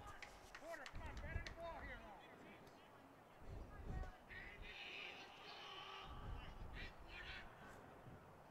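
Faint open-air ballfield ambience: distant, indistinct voices from players and spectators, with a few short calls and scattered small knocks.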